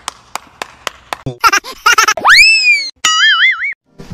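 One person's hand claps, about four a second and speeding up, followed by cartoon comedy sound effects: a tone that swoops up and slowly falls away, then a short wobbling boing.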